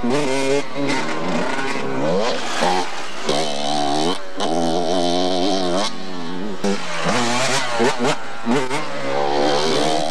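Dirt bike engines revving, the pitch climbing and falling again and again as the riders accelerate and shift, with a brief break a little past four seconds.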